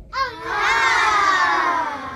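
A high-pitched person's voice giving a wordless cry: it wavers briefly, then holds one long note that slowly falls in pitch.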